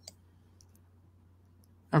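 A few faint computer mouse clicks over a low steady hum, with a voice starting right at the end.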